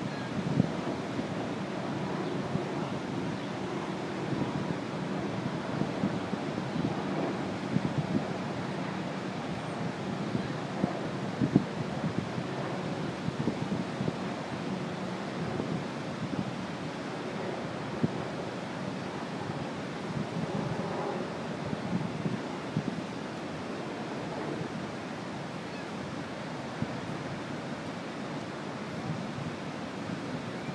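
Steady rushing of the Niagara River's churning water below, with wind buffeting the microphone in brief gusts.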